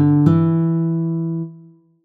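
Instrumental guitar music ending: a last plucked chord rings out and fades away within about a second and a half, leaving silence.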